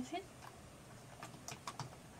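A handful of faint, short clicks, most of them in the second half: a smartphone camera's shutter sounding as a group photo is taken.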